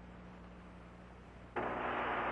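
Static on a radio link: a faint hiss with a low hum, which jumps to a much louder steady hiss about one and a half seconds in, as the channel opens ahead of the next transmission.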